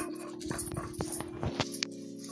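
Stone roller rocked and ground over a flat stone slab (sil-batta), crushing spinach leaves: irregular knocks and scrapes of stone on stone, several within a second or so.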